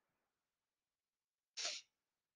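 Near silence, broken about one and a half seconds in by a single short, faint breath noise from a person.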